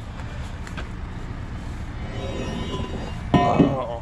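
A heavy vehicle's engine running with a steady low rumble. About three seconds in, a short, louder pitched sound rises above it.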